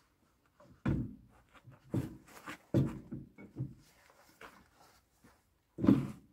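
Metal clunks and knocks of a PD-10 pony starting engine being worked into place against a tractor's engine block, several scattered strikes with the loudest just before the end.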